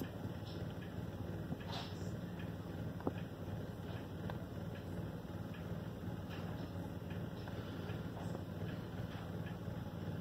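Steady low hum of an Edison C150 phonograph's turntable running, with a card rubbing wet white glue over the turning Diamond Disc. Faint scattered ticks, and one sharper tick about three seconds in.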